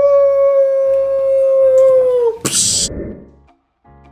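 A person's voice holding one long, steady, high 'woo' note for over two seconds, ending in a short noisy burst. Faint music comes in near the end.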